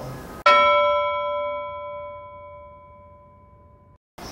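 A single bell-like chime, struck once about half a second in and ringing down slowly over about three seconds before it cuts off: a transition sound effect between interview answers.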